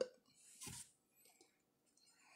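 Near silence: room tone, with one faint short sound a little over half a second in.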